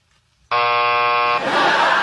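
A flat, steady buzz like a game-show 'wrong answer' buzzer, just under a second long, starting and stopping abruptly about half a second in. Studio audience laughter follows.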